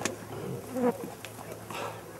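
A low steady buzz during a pause in speech, with a faint short vocal sound about half a second in.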